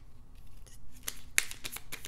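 A tarot deck being shuffled and handled by hand, giving a quick run of sharp card snaps and clicks that starts about a second in.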